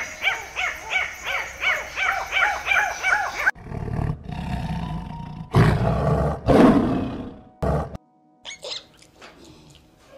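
Ring-tailed lemur calls repeating about three times a second. A little over three seconds in, they give way to a lion roaring and growling in loud, low bursts, the loudest between about five and a half and seven seconds in. Faint scattered sounds follow near the end.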